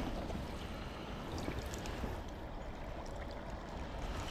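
Small creek's water running steadily, with a few faint ticks and light splashes close by.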